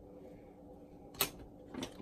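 A woman sneezing into her elbow: one short, sharp sneeze about a second in, then a smaller second sound near the end.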